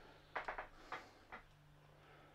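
Near-quiet pause in a voiceover: faint room tone with a low steady hum and a few soft clicks in the first second and a half.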